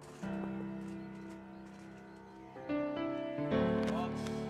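Background music: a slow piano ballad, with chords struck about three times and left to ring and fade.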